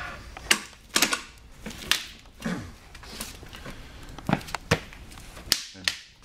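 About ten sharp, irregular knocks and clicks from a Chromcraft dinette chair with a swivel-tilt base being handled, turned upright, set on the floor and sat on.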